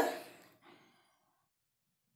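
A speaker's voice trails off into a faint breathy exhale in the first half second, then near silence.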